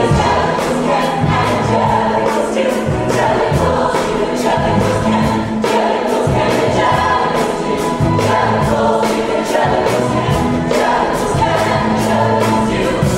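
Musical-theatre ensemble singing in chorus over an accompaniment with bass and a steady beat about twice a second.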